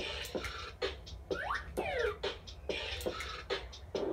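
Bop It Refresh toy's electronic game audio: a looping beat with sharp clicks, and a rising pitch swoop followed by a falling one about a second and a half in.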